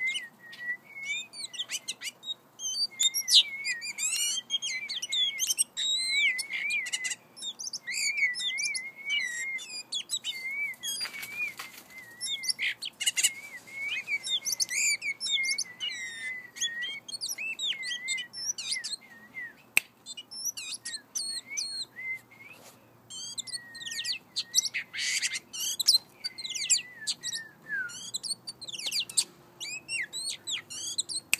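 Oriental magpie-robin calling almost without pause: a wavering twitter under a rapid stream of sharp, high chirps. Two short rustling bursts come near the middle and a few seconds before the end.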